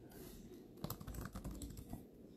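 Faint typing on a computer keyboard: a short run of keystrokes starting about a second in.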